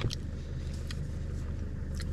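A steady low hum, like a distant running engine, with a few faint small clicks over it.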